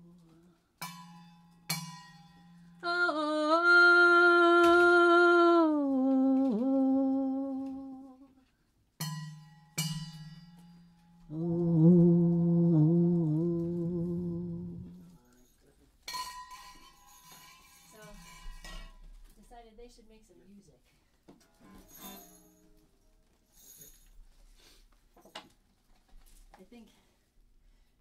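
Two steel thermoses clinked together a few times, each strike leaving a thin metallic ring, alternating with two long, wavering humming tones that bend in pitch. Later come scattered metal clinks and handling noises as the thermoses are set down.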